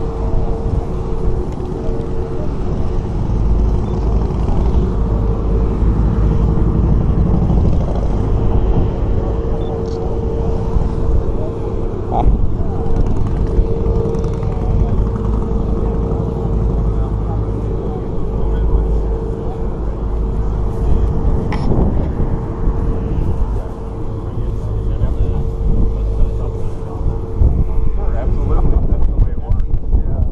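Wind buffeting the microphone as a heavy low rumble, with indistinct voices of people nearby and a steady mid-pitched hum underneath.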